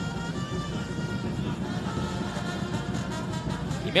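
Football stadium crowd ambience with music and held brass-horn notes playing over a steady din.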